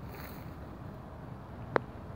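Wind rumbling on the microphone, with one sharp click near the end.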